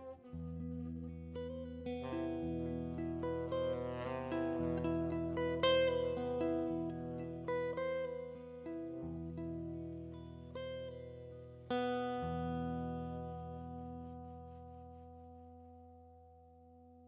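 Hollow-body archtop jazz guitar played alone, a run of plucked chords and single notes closing the tune. A last chord about twelve seconds in rings and slowly fades.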